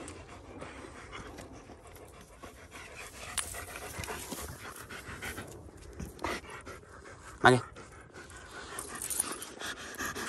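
German shepherd dog panting close by, a steady run of quick open-mouthed breaths. About seven and a half seconds in, a woman calls the dog's name once.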